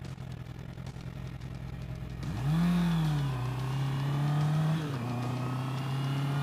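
2020 Honda CB650R's inline-four engine pulling away on the road: low and steady for about two seconds, then the revs climb and drop at an upshift, climb again and drop at a second shift about five seconds in. It is heard through a helmet-mounted camera's microphone, with wind noise.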